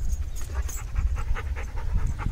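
Yellow Labrador retriever panting quickly, several short breaths a second, mouth open and tongue out.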